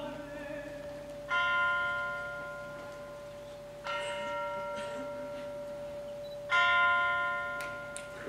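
Tubular bells struck three times, about two and a half seconds apart, each stroke ringing and slowly fading over a held orchestral note.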